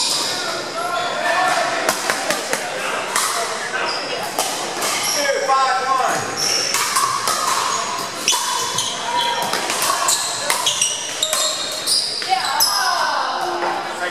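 Pickleball paddles striking hard plastic balls on the neighbouring courts: many sharp pops at an uneven pace, echoing in a large gym hall, over the chatter of players' voices.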